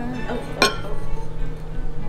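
A metal spoon clinks once, sharply, against a ceramic bowl about half a second in, over quiet background music.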